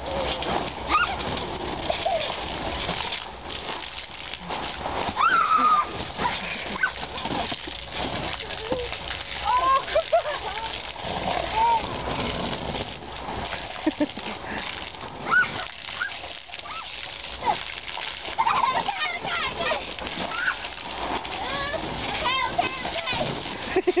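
Water spraying up through a wet trampoline and splashing on the mat as children bounce on it, with children's high-pitched squeals and laughter throughout.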